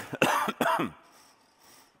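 A man coughing to clear his throat: three quick coughs in the first second.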